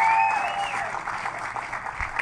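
Audience applauding after a band member's introduction, with a held tone in the first second that fades out.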